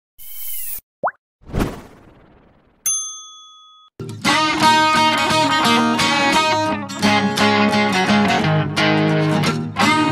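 Logo-intro sound effects: a short high swish, a quick rising blip, a thud and a ringing ding, followed about four seconds in by background music with strummed guitar.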